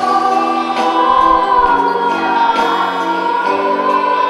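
A children's school choir singing together under a conductor, holding long sustained notes.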